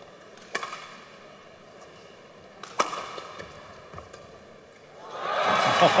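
Badminton racket strikes on a shuttlecock during a rally, two sharp hits a little over two seconds apart with fainter taps between, then crowd cheering rising near the end as the point is won.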